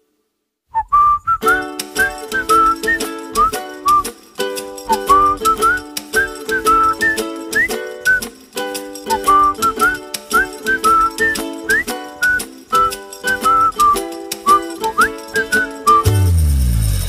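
Background music starting about a second in after a moment of silence: a whistled tune with sliding notes over a light, bouncy accompaniment with a steady beat.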